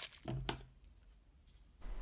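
Light handling of a cut strip of reinforced tape and scissors: a short crinkle and a light click about half a second in, then near quiet.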